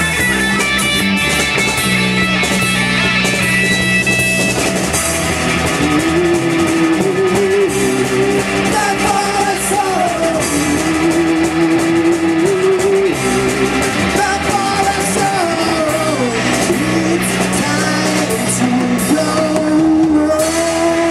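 Live rock band playing: electric bass, electric guitar and drum kit, with male singing over them.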